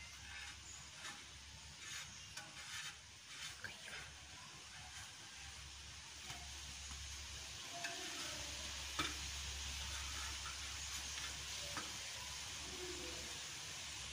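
Bread slices toasting on a flat griddle pan with a faint, steady sizzling hiss that grows a little louder about halfway through, and a handful of light taps and scrapes as a spatula turns the slices.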